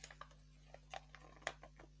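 Faint crinkling and rustling of paper and a foil wrapper being handled as a folded leaflet is pulled out and opened, a series of small irregular crackles with one sharper crinkle about one and a half seconds in.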